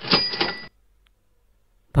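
Short sound effect of about two-thirds of a second: a quick rattle of clicks with a ringing tone over it, cutting off suddenly.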